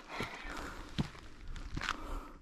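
Footsteps of hikers on a rocky granite trail with loose grit: about three separate steps and scuffs.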